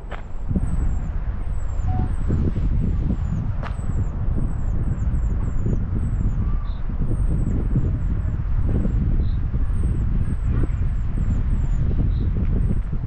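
Low, steady rumbling of wind buffeting the microphone, with high, thin bird calls repeating over it two or three times a second, each call falling in pitch.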